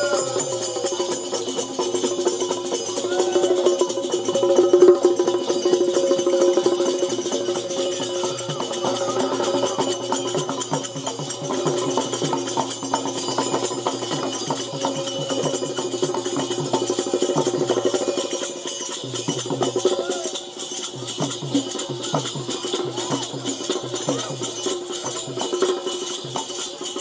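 Bundeli Rai folk music played live through loudspeakers: a steady drum beat under continuous jingling, rattling percussion and a held melodic line.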